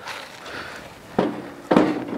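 Blackstone 22-inch tabletop griddle carried a few steps and set down onto a folding camping table's top: footsteps and handling rustle, then a clunk a little past a second in as it lands.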